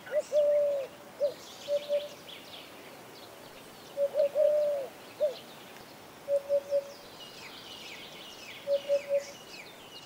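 A dove cooing in phrases of clear, low notes: a long drawn-out coo between short ones near the start and again about four seconds in, then two quick runs of three short coos. Small birds chirp faintly and steadily over it.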